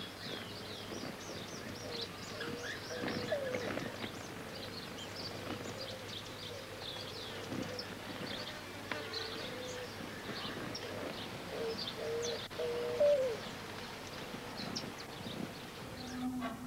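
Hummingbirds hovering at flowers, their wings giving a buzzing hum that comes and goes, over many quick, high chirps and twitters from birds.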